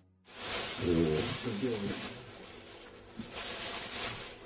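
Plastic bag crinkling and rustling as hands handle and open a packet of crystal methamphetamine, the crystals inside giving a dry rustle when felt. It starts just after a brief silence and is loudest in the first couple of seconds, with a muffled voice underneath.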